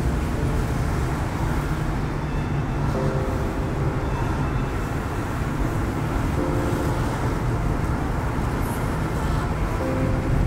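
Steady low rumble of a car driving along a city road, tyre and engine noise with no sudden events. Faint held notes of background music come and go over it.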